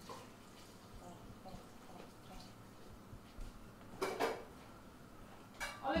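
Faint clinks of a metal lid and spoon against an aluminium cooking pot on a gas stove, with a louder short clatter about four seconds in.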